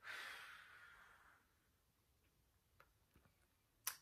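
A woman's long, breathy out-breath, a sigh that fades away over about a second and a half: a relaxing exhale during a neck stretch. A short click near the end.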